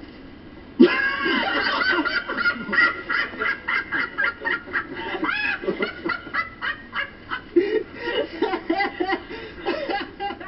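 Several people laughing hard together, starting suddenly about a second in, heard through a television's speaker with its dull, narrow sound.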